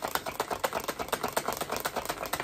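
Tarot cards being shuffled by hand, the deck's edges slapping together in a rapid run of crisp clicks, about ten a second.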